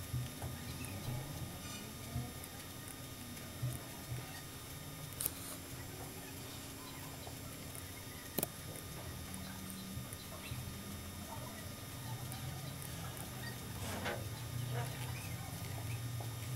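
A handful of sharp computer mouse clicks a few seconds apart, over a faint steady low hum.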